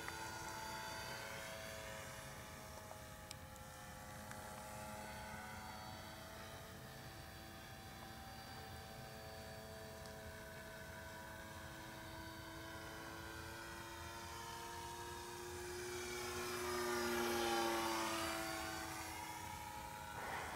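Radio-controlled Stevens AeroModel X-480 model airplane flying overhead, its motor and propeller giving a steady pitched hum. The hum swells and shifts in pitch as the plane passes closest, a few seconds before the end, then fades.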